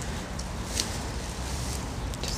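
Outdoor background noise: a steady low rumble with a few faint, short scuffs.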